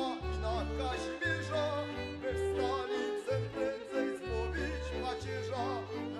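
A girl singing a song into a microphone, with vibrato in the melody, over an instrumental backing with a steady bass line.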